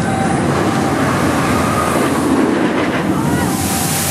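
Steel dive coaster train running through its splashdown water trough: a rushing train-on-track noise builds into a loud hiss of spraying water near the end.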